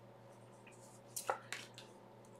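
Tarot cards being laid down on a wooden tabletop: a few short, soft slaps and slides in the second half.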